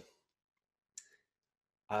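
A single short click about halfway through a pause in speech, which is otherwise dead silent: a mouse click advancing the presentation slide.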